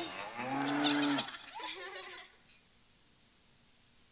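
A low, drawn-out cow's moo lasting about a second, followed by a shorter, higher-pitched call. Then only faint tape hiss.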